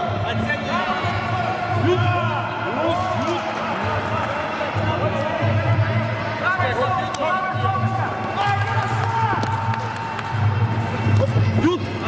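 Echoing sports-hall ambience: voices and short shouts, with scattered thuds of gloved blows during youth Muay Thai sparring. Background music with a pulsing low beat runs underneath.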